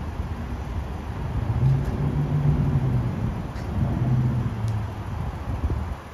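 A motor vehicle's low engine rumble that swells twice, about two and four seconds in, over a steady background hum.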